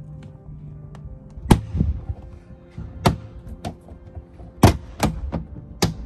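Irregular sharp knocks and clicks of plastic trim and rubber seal being pulled and pressed back by hand as a dashcam cable is tucked in behind the rear hatch trim, over background music.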